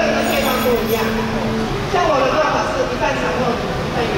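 Voices talking in a street crowd, with a steady low hum held for about the first second and a half, then voices alone.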